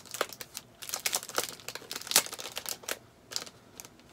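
Packaging of a quilting ruler template crinkling as it is handled: a quick, irregular run of sharp crackles, the loudest about two seconds in.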